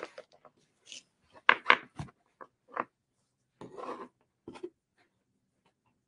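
Scattered short snips, clicks and rustles from scissors and wooden beads being handled on a craft table, the loudest pair of clicks about a second and a half in.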